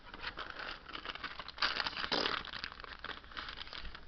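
Pokémon trading cards being handled at close range: a crinkly rustling with many small ticks and scrapes, loudest around a second and a half to two seconds in.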